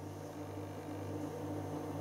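Steady low electrical hum of room tone, with no distinct sound events over it.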